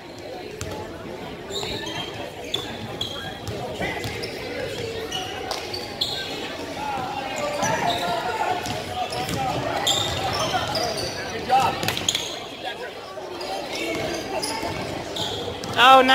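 A basketball being dribbled on a hardwood gym floor during play, with indistinct shouts and voices from players and spectators echoing in the large gym.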